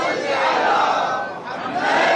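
A crowd of men calling out loudly together in two swells, the second one loudest near the end.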